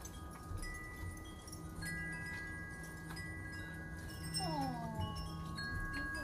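Wind chimes ringing in the breeze: several overlapping sustained high notes with light tinkling strikes. About four seconds in, a short whine of several pitches falls together and is the loudest moment.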